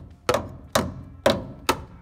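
A hooked metal tool scraping and striking the rusted frame of a Toyota 80 Series Land Cruiser: four sharp strokes, about two a second. The tool is knocking loose rust scale from a frame rusting from the inside out.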